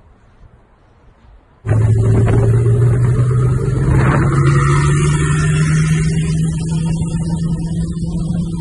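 SSC Tuatara's twin-turbo V8 running. Its note cuts in loudly just under two seconds in after a faint start, then rises slowly and steadily as the car pulls away.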